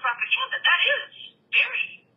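Speech heard over a telephone line: one voice with the thin, narrow sound of a phone call, which stops just before the end.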